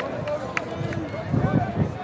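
Distant shouting of players and people on the sidelines during a lacrosse game: short, overlapping calls that rise and fall in pitch, over open-air rumble, with a couple of sharp clicks.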